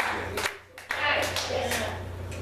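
Several people clapping their hands in uneven, scattered claps, broken by a short lull a little under a second in.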